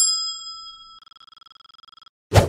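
Notification-bell sound effect for a subscribe animation: a bright bell ding that rings on and fades, then a rapid fluttering ring from about a second in as the bell icon shakes.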